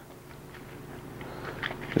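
Crisp romaine lettuce leaves being torn apart by hand, a few faint crackly tears late on, over a steady low hum.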